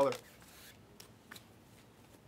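Trading cards being handled and flipped through, a faint sliding of card stock with a few light clicks about a second in.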